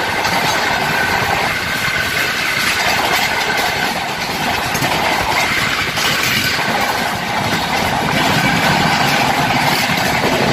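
Steady, loud running noise of a moving Indian passenger train, heard from the open side of a coach, with a second train running alongside on the next track.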